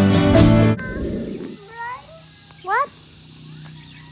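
Background music that cuts off abruptly under a second in, then two short animal calls rising in pitch about a second apart, the second louder, over a faint steady hum.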